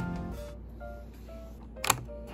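Background music, then a single sharp plastic click near the end as the keyboard's flip-out rear foot snaps into position.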